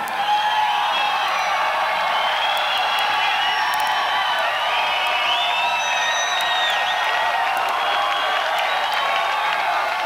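Large concert crowd cheering and applauding at the end of a song. Shrill whistles and yells ride over steady clapping throughout.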